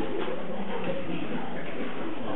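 A steady hubbub of many people talking at once, an indistinct murmur of overlapping voices.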